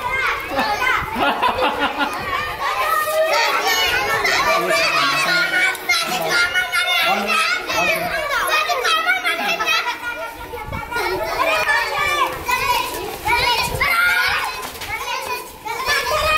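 A crowd of young children shouting and calling out over one another at play, many high voices overlapping without a break.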